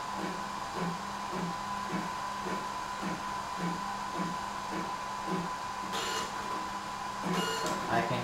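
Fujifilm DX100 inkjet photo printer running as it outputs a print: a steady hum and high whine with soft pulses repeating a little under twice a second, and a short sharp rasp about six seconds in as the print comes out.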